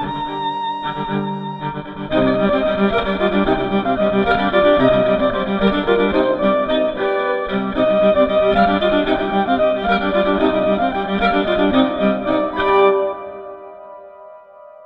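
Five-string electric violin playing a bowed melody over a band backing, which comes in fuller and louder about two seconds in. The music breaks off about a second before the end, leaving a faint fading tone.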